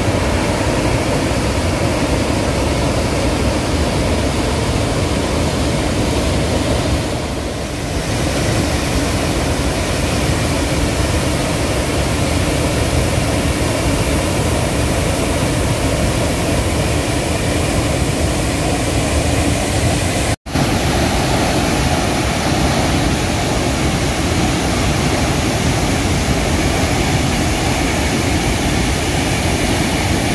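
Steady roar of falling water from Athirappilly Falls, a large multi-stream waterfall, with a sudden brief dropout about twenty seconds in.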